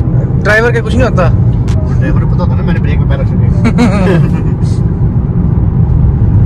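Mercedes-AMG A35's turbocharged four-cylinder engine and road noise inside the cabin at speed, a loud, steady low drone, with a voice heard a few times over it.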